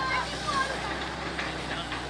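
An excavator's diesel engine running steadily under the chatter of an onlooking crowd, with a few short raised voices in the first second.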